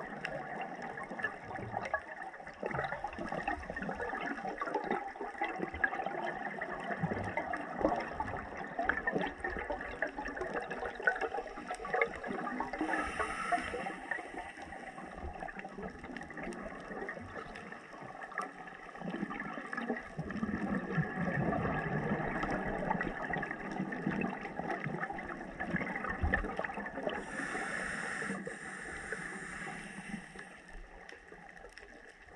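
Underwater sound on a scuba dive: a steady crackling wash of water noise, with a louder, lower bubbling from about twenty seconds in, typical of a diver's exhaled regulator bubbles, and two short hisses.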